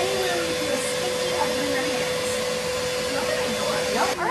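Spray-tan machine's air blower running steadily: a continuous rushing hiss with one steady tone through it, with faint voices underneath.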